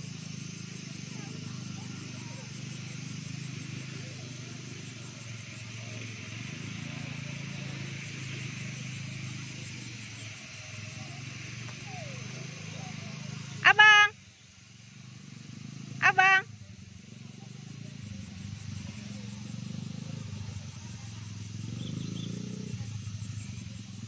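Small ATV engine running steadily as the quad circles a dirt track at a distance, with a high insect buzz pulsing above it. A person's voice calls out twice, briefly and loudly, about halfway through.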